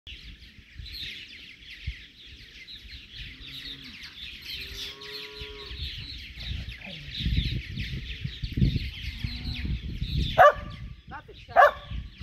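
A colony of purple martins calling, many birds chattering at once. Near the end, a dog barks twice, loudly.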